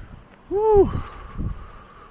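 Wind gusting against the microphone in low rumbles, with a short high-pitched vocal "ooh" about half a second in that rises and then falls in pitch.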